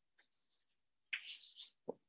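Chalk scratching on a chalkboard as a capital letter is written: a faint stroke near the start, then a quick run of louder, high, scratchy strokes about a second in.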